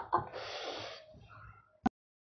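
A short breathy gasp from a person, without a voiced tone, fading out after about a second. A single sharp click near the end, then the sound cuts off.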